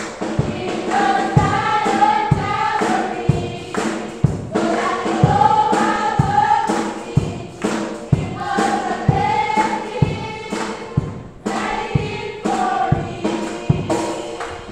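A youth choir of children and teenagers singing a gospel song together, their voices rising and falling in long sung phrases over a steady percussive beat.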